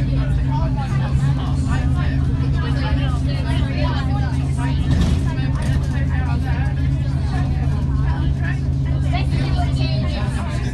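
School bus engine running at a steady pitch while the bus drives along, heard from inside the cabin, with passengers chattering over it.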